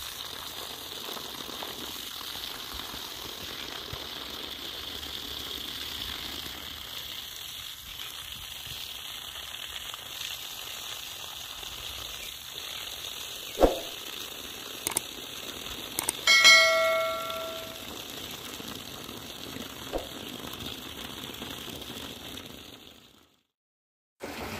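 Steady rush of water pouring from the outlet pipe of a 24 V DC solar submersible pump and splashing onto grass; the pump is delivering pressure. A single knock comes a little past halfway, then a short high ringing tone, and the sound fades out just before the end.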